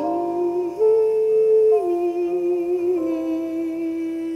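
A voice singing a slow melody in long held notes with a slight waver, rising to a higher note about a second in and stepping back down near two seconds.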